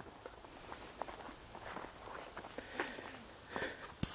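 Faint, irregular footsteps along a path through overgrown weeds and brush.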